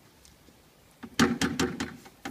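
Metal paint tin knocking and clattering against the rim of a plastic bucket in a quick run of sharp strokes, starting about a second in, as the last of the white undercoat is shaken out.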